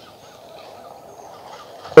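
Quiet outdoor city ambience: a faint, even low rumble with a few faint, distant bird chirps over it.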